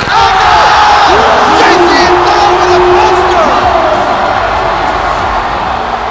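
Large arena crowd erupting into loud cheering and screaming for a basketball dunk. The roar jumps up suddenly and holds, with individual shouts and yells riding on top.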